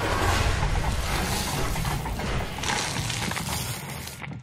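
Liquid waste sloshing and splashing violently inside a plastic portable toilet as the cabin is flung through the air. It is a loud, continuous rushing and splattering that starts suddenly.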